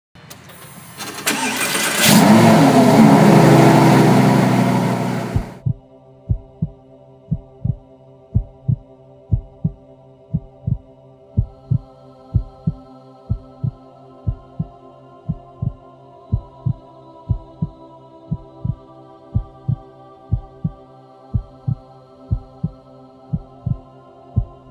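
A car engine starting and revving loudly for the first few seconds, then dying away. After that, background music: held chords over a steady deep kick-drum beat, about two beats a second.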